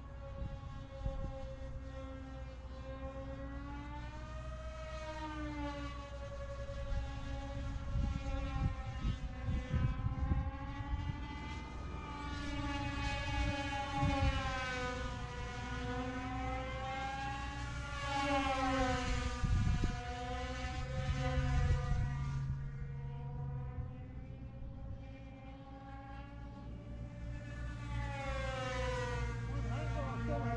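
Twin 2200 kV brushless motors and propellers on a Ritewing Nano Drak 28 RC flying wing whining overhead. The pitch swings up and down again and again as the plane passes and the throttle changes. The whine is loudest through the middle, fades about three-quarters of the way in, then builds again near the end.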